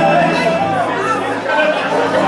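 A man preaching into a handheld microphone, his voice amplified through a PA system.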